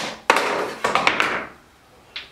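A Skee-Ball ball knocking down onto a parquet wood floor and rolling across it to the ramp. A sharp knock comes first, then two rattling rolls of about half a second each that fade out about a second and a half in.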